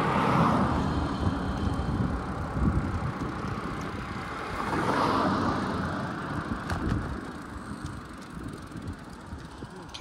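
Wind and road rumble on a bicycle-mounted camera as the bike rides along, with a car passing close by near the start and another swell of traffic noise about five seconds in. A few sharp knocks around seven seconds as the wheels cross a steel plate at the end of the bridge.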